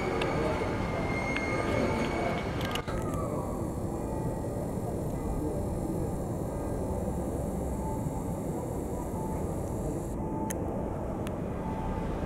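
City street traffic heard from an upper-floor window: a steady low rumble of passing vehicles.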